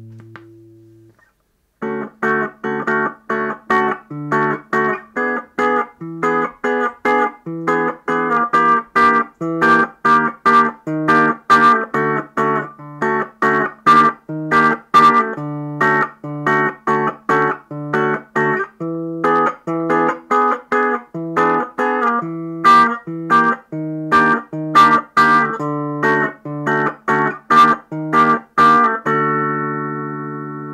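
Guitar music: after a short pause, a steady run of picked notes, two or three a second, each ringing briefly and decaying. It ends on a held chord near the end.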